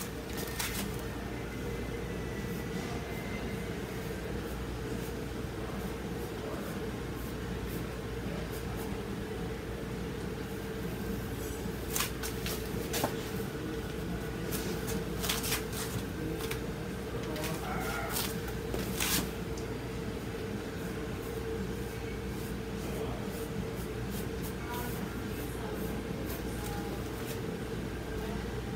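Steady low room hum with scattered light clicks and taps, bunched in the middle, from handling painting tools at a canvas.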